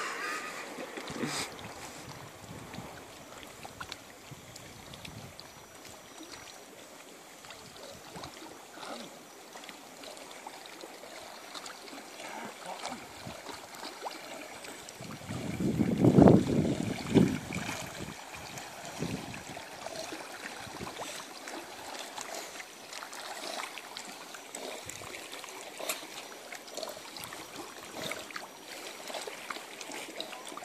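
Gentle splashing and lapping water from a dog and a person swimming, with scattered small splashes. About halfway through, a louder low rush of noise swells for about three seconds and fades.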